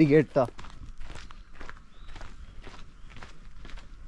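Footsteps crunching on a gravel and dirt trail at a steady walking pace.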